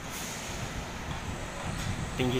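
Steady construction-site din: a low rumble and hiss with no distinct event standing out.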